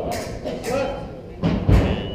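Footwork on a fencing strip: a few light knocks, then a heavy low thud about a second and a half in, like a foot stamping or landing on the strip.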